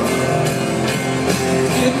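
Live country band playing: acoustic and electric guitars over drums keeping a steady beat, loud through the arena's sound system.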